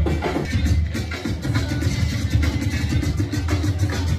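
Dance music mixed live by a DJ on a DJ controller, with a steady beat and heavy bass.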